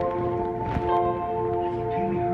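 A sustained bell-like drone: several ringing tones held together, pulsing slowly in level, with a brief click a little under a second in.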